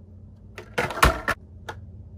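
Plastic blister packaging of carded Hot Wheels toy cars being handled as one card is put away and the next picked up: a short rustle about half a second in, a sharp click about a second in, and a couple of smaller clicks after, over a low steady hum.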